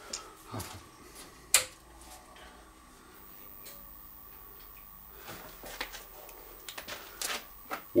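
A few switch clicks, the loudest a sharp snap about one and a half seconds in, over a faint steady electrical hum with a thin high whine: breakers being switched as the workshop is put onto the inverter running off the batteries.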